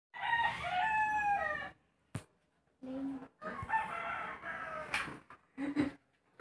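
A rooster crowing twice: a long call of about a second and a half, then a second, longer crow starting about three seconds in. A sharp click comes between them.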